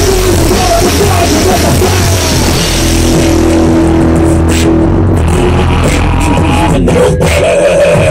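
Rock band playing loud live: drum kit and electric bass with other amplified instruments. About three seconds in, the dense playing thins out to a held note with separate drum hits.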